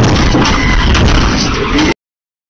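Police cruiser's engine and road rumble with the scrape and knock of its front bumper against the rear of a fleeing SUV during a low-speed PIT maneuver. The sound cuts off suddenly near the end.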